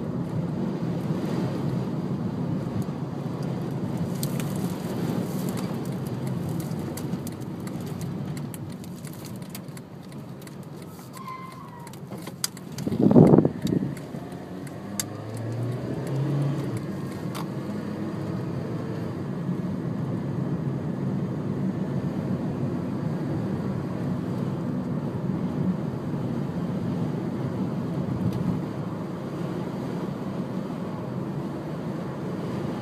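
Steady road and wind noise heard from inside a car driving through a dust storm, with a brief loud burst about halfway through.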